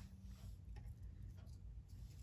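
Quiet room with a low hum and a few faint, short ticks spaced irregularly through it.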